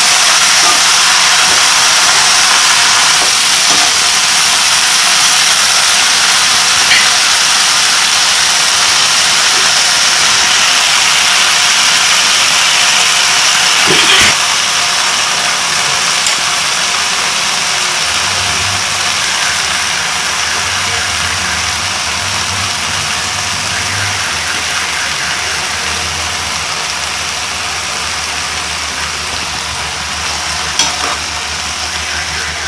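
Amaranth greens sizzling and steaming in a hot pan, a steady hiss that slowly eases as the greens wilt, with a single knock about halfway through.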